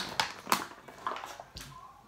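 A clear plastic clamshell food pack being picked up and handled, crackling and clicking, with one sharp click about a quarter of the way in.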